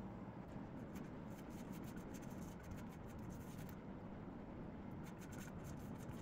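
Silicone pastry brush stroking butter or oil across the bottom of a metal cake pan: faint, quick scratchy strokes in two runs, pausing about two-thirds of the way through.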